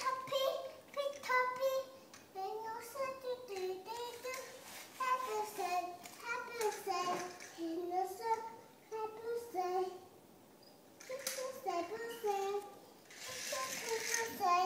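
Toddler babbling to herself in a sing-song voice, short rising and falling phrases without clear words, with a brief pause about ten seconds in.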